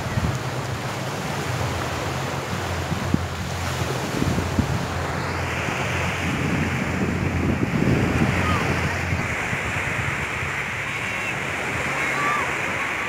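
Sea surf washing on a sandy beach, a steady rushing hiss, with wind buffeting the microphone as a low rumble.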